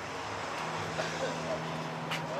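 Outdoor crowd ambience: indistinct background chatter of people talking, with a steady low hum that sets in about half a second in.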